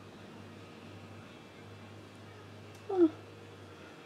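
Low steady room hum, broken about three seconds in by a woman's short, high, falling "huh".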